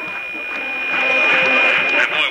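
Sound from the stands at a football game, with music in it, swelling about a second in. A steady high whine runs under it.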